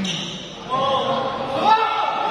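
Men's voices shouting in a large sports hall as a badminton point ends: several loud yells begin about two-thirds of a second in, the loudest near the end.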